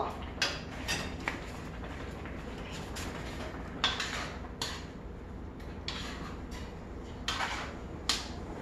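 A spoon scraping and clinking against a pan while stirring a simmering curry, in irregular strokes a second or so apart.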